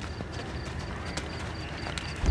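A horse's hooves walking, with a few separate hoof strikes, over a steady high ticking about five times a second.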